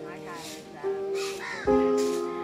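Background music of sustained held chords, with a new chord coming in near the end, over outdoor sound with birds calling in short bending cries.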